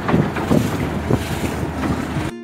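Small boat under way on a river, its 85 hp outboard motor running under a loud, gusty rush of wind buffeting the microphone and water rushing past the hull.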